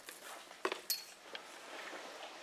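A few faint short clicks and light rustling from a paper cup being handled as powdered homemade worm feed is tipped out of it, one click with a brief high clink.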